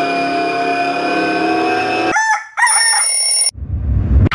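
Edited sound effects: a long held call with many steady overtones, then a short curling, warbling flourish, then a steady high-pitched tone that cuts off abruptly about three and a half seconds in.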